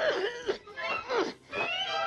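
Daffy Duck's cartoon voice making wordless vocal noises, a run of short throat-clearing sounds and calls that slide up and down in pitch.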